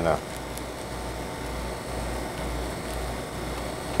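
Steady low hum with an even background hiss: room tone.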